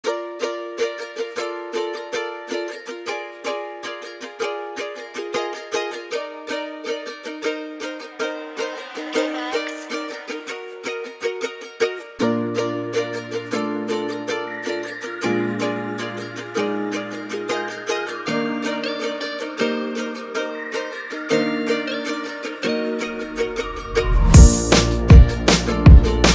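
Instrumental ukulele type beat at 158 BPM in B-flat major: plucked ukulele picking a quick, steady pattern of chords, with low bass notes joining about halfway through.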